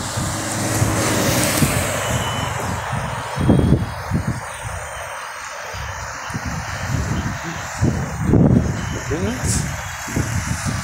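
Road traffic: cars driving past close by, a steady mix of engine and tyre noise that swells as vehicles pass.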